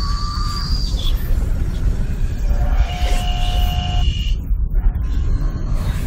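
Experimental electronic music from modular and physical-modeling synthesis: a heavy low rumble throughout, with thin steady tones coming and going, one pair holding from about two and a half to four seconds in. Near the end the treble cuts out in patches, the digital compression artifacts from spectral processing that the piece is built on.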